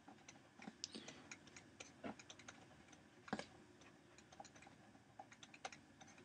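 Faint, irregular small ticks and taps of a stylus writing on a tablet screen, with a few louder taps among them.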